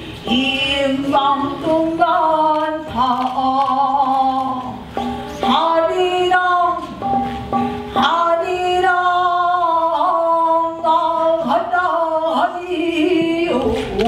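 A single voice singing slow, drawn-out phrases, holding long notes that bend and slide in pitch.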